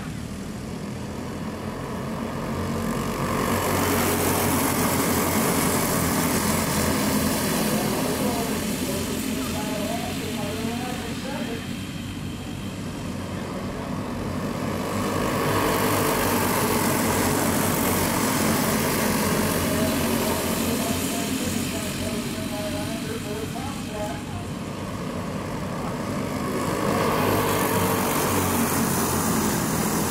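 A pack of dirt-track racing karts running at race speed, their small engines swelling loud as the field sweeps past and fading as it goes around the far side, three times over at about eleven- to twelve-second intervals.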